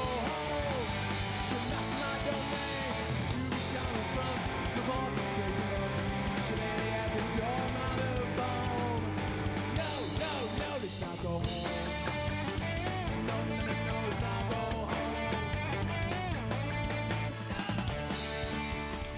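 Live rock band playing an instrumental passage: strummed guitar, a drum kit with cymbals and a violin over a steady bass line, with gliding notes running through it.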